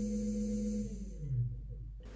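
Brushless hoverboard hub motor driven by a ZS-X11H controller, running with a steady hum, then winding down in pitch and stopping about a second and a half in.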